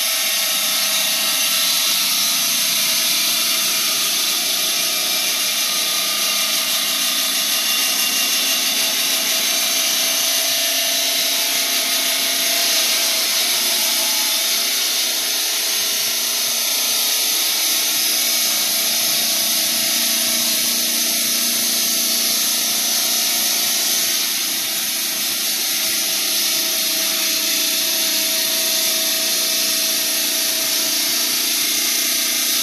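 Stone-cutting bridge saw running with its blade cutting blocks of honeycomb calcite: a steady, loud, high-pitched grinding.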